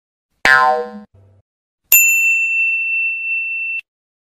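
Sound effects of a subscribe-button animation. About half a second in there is a short effect with many overtones that dies away quickly, then a faint click. A high, steady bell-like ding follows and holds for about two seconds before cutting off suddenly.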